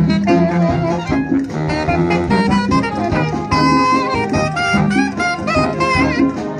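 Large wind band of saxophones and brass, sousaphones included, playing a tune live: a saxophone-led melody over a steady, repeating bass line.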